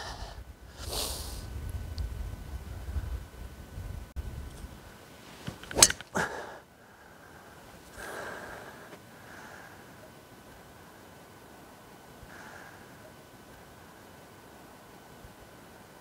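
Driver striking a golf ball off the tee: one sharp crack about six seconds in. Before it, wind rumbles on the microphone and there is a short breath sound about a second in.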